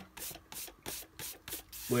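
Bare hand rubbing and brushing across dry watercolour paper in several short strokes, sweeping off little lumps where the paper surface has broken up.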